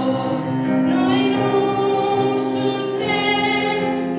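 A woman singing a Romanian Christian song through a microphone, her voice amplified, over steady sustained instrumental accompaniment.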